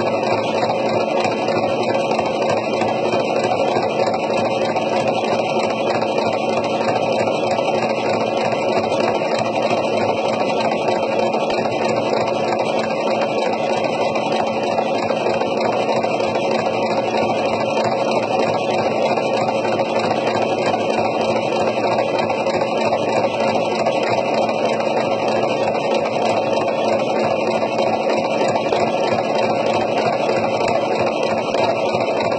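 Electric sewing machine running steadily without a pause, stitching lines of topstitching around a quilted fabric hat brim.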